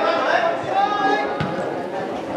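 Players' voices calling out across a football pitch, with one sharp thud of the ball being kicked about one and a half seconds in.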